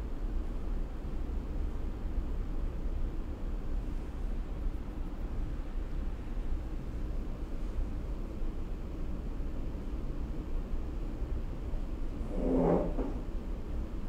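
Steady low background rumble and hiss of room noise with no speech. A brief short sound comes near the end.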